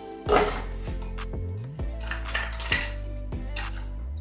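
Background music, over which metal and glass clink and clatter a few times, the loudest just after the start, as bar tools are handled against the ice-filled glass mixing glass.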